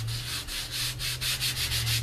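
A baby wipe rubbed briskly back and forth over strips of tape to work color into them: a run of quick scrubbing strokes, several a second, over a steady low hum.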